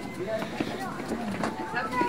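Indistinct talk from people walking close by, low and broken up, with a few short knocks.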